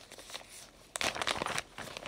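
Clear plastic packaging of a cross-stitch kit crinkling as it is handled and turned over, with a short burst of rustling about a second in and a few lighter crackles after.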